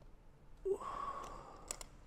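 Two sharp metallic clicks close together near the end, as the latches of an aluminium carry case are flipped open, just after a breathy "ooh".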